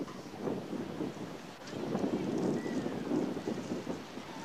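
Wind buffeting an outdoor microphone: a steady rushing noise that swells about one and a half seconds in.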